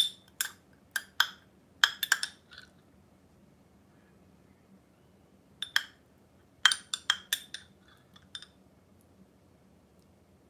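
Metal spoon clinking against ceramic tableware while dressing is scooped from a small cup: a string of light, ringing clinks in the first few seconds, a pause, then another cluster about six to eight seconds in.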